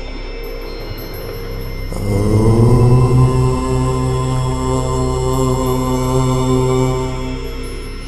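A man chanting one long, steady "Om", starting about two seconds in and fading out near the end, over a continuous steady drone.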